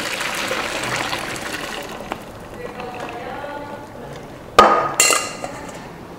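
Hot blanching water poured from a steel pot through a mesh strainer, a steady splashing pour that fades after about two seconds. About four and a half seconds in comes a short, louder metal clink from the pot and strainer.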